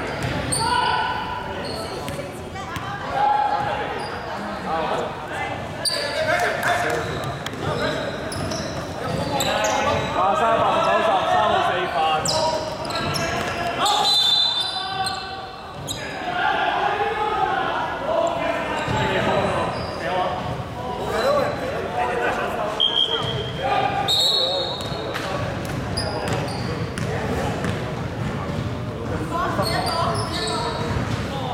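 A basketball bouncing on a hardwood gym court, with players' voices talking throughout and the sounds echoing in a large sports hall.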